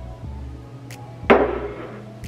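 Background music, and a little past halfway one sharp knock of a glass soda bottle set down on the tabletop.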